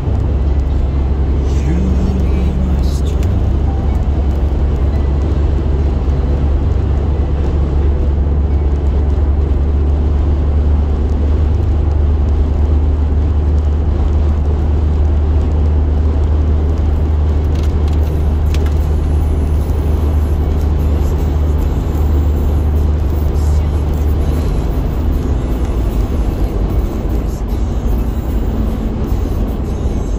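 Steady low rumble of road and engine noise inside a moving car's cabin at highway speed, easing slightly near the end.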